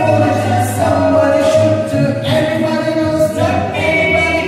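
A small group of men singing together in harmony, holding long sustained notes.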